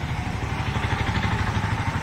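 A motor vehicle engine running close by, a steady low throb with a rapid, even pulse.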